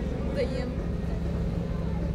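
Indistinct voices of people close by over a steady low rumble, with a low steady hum coming in about halfway through.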